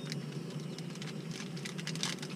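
Light, scattered clicks and rustles of a small object being fiddled with in the hands, over a steady low hum.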